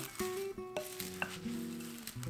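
A wooden spatula stirring dry oats and toasted coconut chips in a bowl, a dry rustling scrape, over soft background music with held notes.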